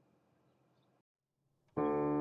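Faint room tone that drops to dead silence about a second in, then a sustained keyboard chord starts suddenly just before the end: the opening of the song's keyboard intro.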